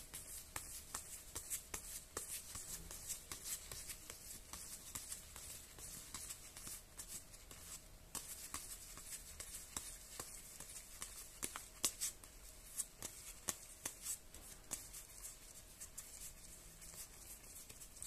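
Star Wars CCG trading cards being leafed through one at a time by hands in disposable plastic gloves. Faint, irregular soft clicks and slides of card against card, several a second.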